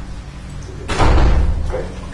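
A door slamming shut about a second in: one heavy thud that fades over most of a second.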